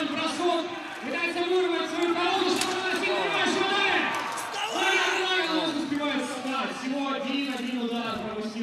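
A man speaking steadily, like running commentary.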